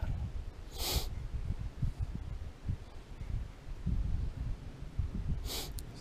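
Wind buffeting the microphone in an uneven low rumble, with a sharp sniff about a second in and a quick breath in near the end.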